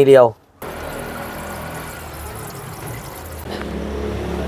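Water poured steadily into a Honda Amaze's windshield washer reservoir, a continuous pouring sound that starts about half a second in.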